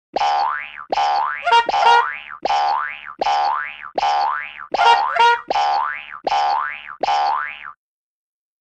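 Cartoon boing sound effect repeated about ten times, each boing a quick upward-sliding spring twang under a second long. The run of boings is twice broken by a short sound of a different character, and it stops near the end.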